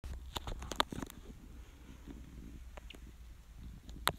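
Handling noise on a handheld recording: a quick cluster of faint clicks and taps in the first second, then a low rumble with a few soft ticks.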